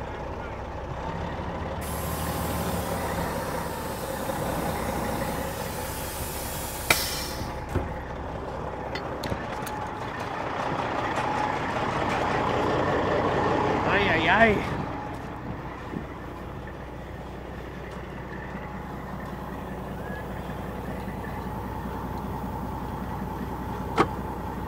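A cabover semi truck's diesel engine idles steadily. About two seconds in, air hisses for some five seconds and ends in a sharp click, typical of the air brakes being released on a truck with a rear brake shoe still dragging. A brief voice is heard about fourteen seconds in.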